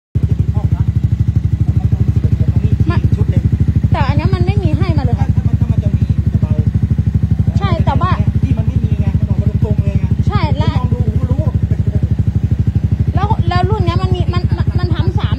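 Honda ADV 350 scooter's single-cylinder engine idling steadily through its exhaust, an even, fast-pulsing loud exhaust note, held at idle for a roadside exhaust-noise check with a sound-level meter.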